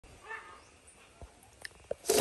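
A faint, short animal cry about a quarter of a second in, followed by a few light clicks and knocks.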